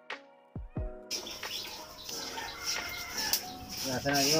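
A short edited music sting of held ringing tones with a couple of falling swoosh sweeps, then from about a second in a busy outdoor background of birds chirping with scattered clicks and rustling.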